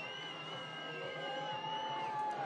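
Din of a red-carpet crowd with long, steady high-pitched notes held over it.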